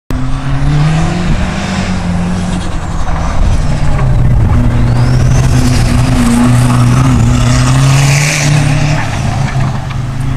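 Dodge Neon autocross car's engine running hard through a cone course, its note rising and falling as it accelerates and slows between turns. The car passes close by partway through.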